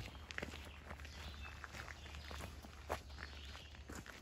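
Faint footsteps crunching on a gravel road, irregular steps with one slightly louder crunch near the end, over a steady low rumble.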